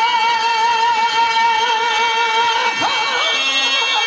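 A male stage singer holds one long high note with steady vibrato in a Telugu padyam verse, over the sustained drone of a harmonium. About three seconds in, the voice leaves the held note and slides into new melodic turns.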